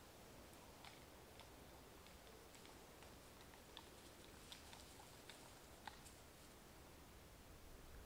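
Near silence: a faint steady hiss of outdoor ambience, with a scattering of soft ticks and clicks between about one and six seconds in.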